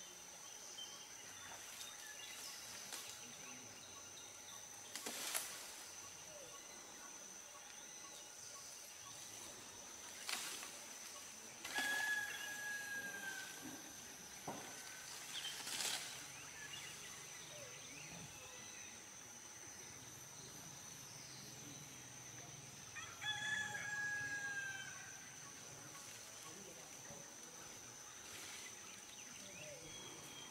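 Faint tropical forest ambience: a steady high insect drone, a few sharp cracks of stems breaking as an elephant feeds on palm and bamboo, and twice a drawn-out crowing bird call that falls slightly in pitch.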